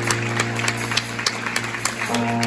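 Scattered audience clapping as applause dies away, irregular single claps over a low note held underneath.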